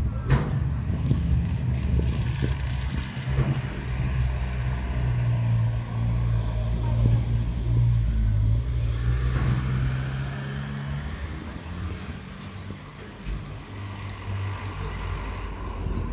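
A motor vehicle engine running close by: a steady low hum that fades out about eleven seconds in, leaving general street noise.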